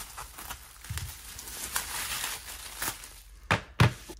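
Plastic bubble wrap crinkling as a phone is unwrapped from it by hand, followed by two sharp knocks near the end as the phone is set down on a wooden desk.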